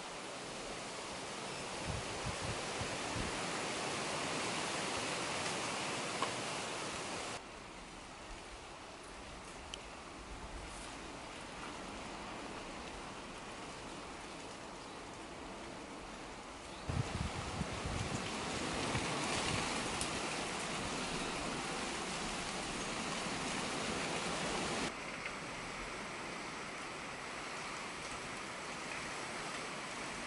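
Steady outdoor rushing hiss with no distinct events, and a few low rumbles about two seconds in and again around seventeen seconds. The level changes abruptly three times.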